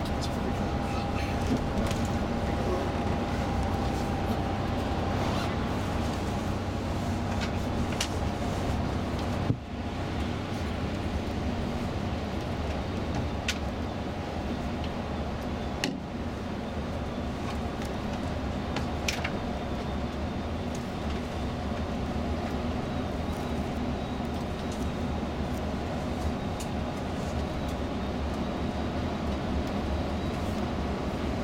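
Steady road and engine noise inside a tour coach cruising on a motorway, with a few faint clicks and rattles and a short break about ten seconds in.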